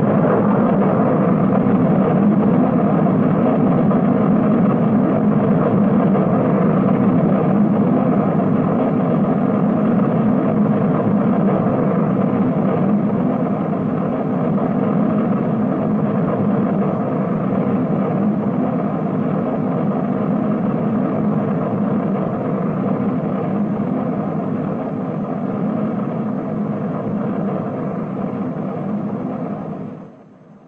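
Rocket engine of a Jupiter missile firing at launch: a loud, steady, dense rumble that eases off slowly toward the end.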